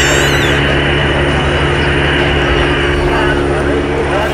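Military helicopter flying low, heard as a steady engine and rotor drone, with rain hiss and voices of people talking mixed in.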